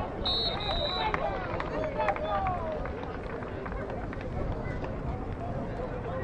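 Several voices calling and shouting at a distance over a low steady rumble, with a brief high steady tone shortly after the start lasting under a second.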